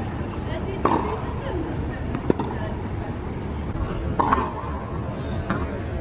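Tennis balls being struck with rackets: about four sharp hits, each with a short ringing, spaced roughly a second and a half apart, over a steady background hiss.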